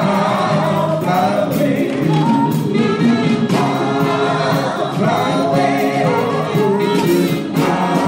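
Gospel singing by a choir, voices holding sustained notes.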